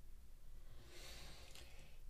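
Quiet room with one faint breathy hiss lasting about a second, a soft out-breath just before speaking.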